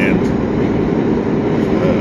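Steady road and engine noise inside a moving car's cabin: an even, low rumble with hiss.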